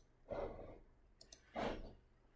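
A person breathing out twice, faintly and close to the microphone, with two quick computer-mouse clicks between the breaths as the audio player is paused.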